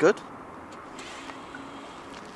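Tesla Model S electric car beginning to creep forward under Smart Summon, almost silent: only a faint hum for a moment over steady quiet outdoor background noise.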